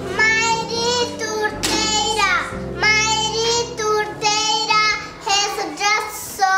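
Children's voices singing a song, in phrases of high held notes with short breaks between them.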